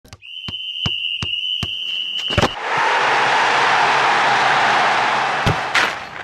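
TV programme intro sound design: evenly spaced sharp hits, a little under three a second, under a steady high tone, giving way about two and a half seconds in to a loud, even rushing noise that breaks off near the end with a couple of sharp hits.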